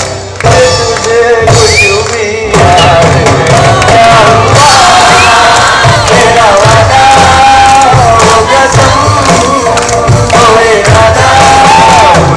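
Live band playing a song: drum kit, bass and guitars under a wavering lead melody, the full band swelling up loud about two and a half seconds in.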